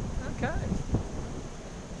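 Thunder rumbling low and fading away over about a second and a half, under a steady hiss of heavy rain.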